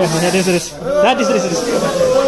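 Aerosol party snow-spray cans hissing as they are sprayed, under a crowd's overlapping shouts and laughter.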